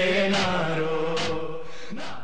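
A male voice chanting an Urdu noha (Shia lament) without instruments, holding one long note that slowly fades.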